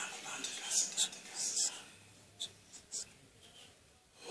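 A man laughing softly and breathily into a handheld microphone, with whispered, airy puffs of breath. Two faint clicks come later.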